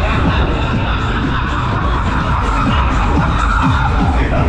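Loud fairground ride music playing throughout, over a heavy low rumble of wind buffeting the microphone as the ride spins.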